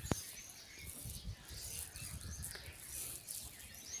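Faint, scattered bird chirps over a low uneven rumble on the microphone, with one sharp click just after the start.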